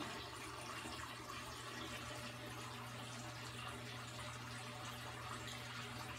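Faint, steady trickle of water circulating through a saltwater reef aquarium and its sump, with a low, steady hum under it.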